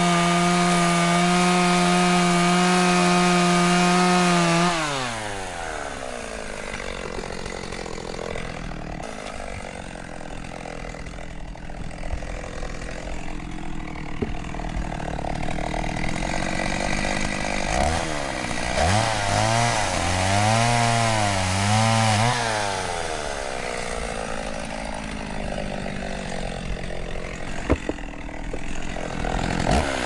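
Stihl two-stroke chainsaw running at full throttle, then winding down to idle about five seconds in. Its revs rise and fall several times past the middle, and it revs up again at the very end.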